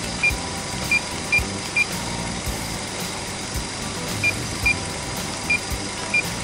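Seven short, high beeps from a handheld OBD2 scan tool's keypad, in two bunches, as its live-data list is scrolled down. Underneath, a car engine idling steadily.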